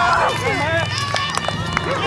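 Overlapping shouts and calls from people watching and playing on the field, high voices rising and falling with no clear words. A low steady hum runs underneath from about half a second in.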